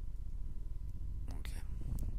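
Steady low electrical hum, with a brief whisper about one and a half seconds in and a single sharp mouse click near the end.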